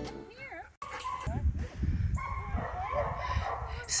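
Young Labrador-mix dog giving short, high whines and yips while playing, over a low rumble.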